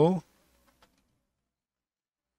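A man saying the word "no", cut off in the first quarter second, then dead silence.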